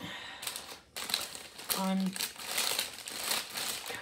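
Paper and plastic rustling and crinkling as a cross-stitch kit (chart, fabric and thread card) is handled, a dense run of small crackles starting about a second in.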